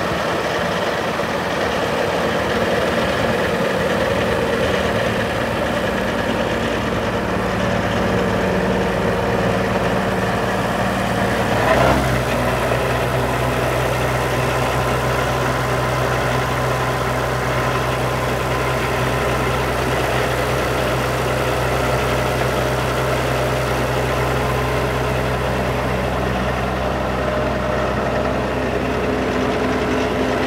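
Tractor engine idling steadily. About twelve seconds in there is a brief knock, and after it the low engine hum is stronger.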